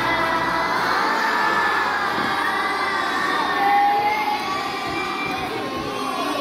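A large group of children's voices raised loudly together, many overlapping at once.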